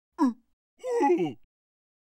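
A cartoon larva character's wordless vocal sounds: a short falling yelp, then a longer wavering groan ("gwoo") about a second in.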